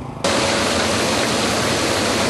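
Steady, even rushing noise at a borehole wellhead, a pipe running down a steel casing. It starts suddenly about a quarter second in and holds level throughout.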